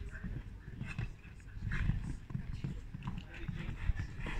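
Horse cantering on a sand arena surface, its hoofbeats coming as irregular dull thuds, with faint voices in the background.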